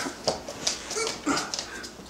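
A Catahoula Leopard Dog whimpering, with a brief high whine about halfway through, among short rustling and shuffling sounds of movement.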